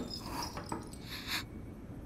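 A short thump right at the start, then soft, faint whimpering and sniffling from a woman crying quietly.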